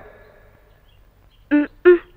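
A pause in the dialogue with only faint background, then near the end a short two-syllable vocal sound in a high-pitched voice.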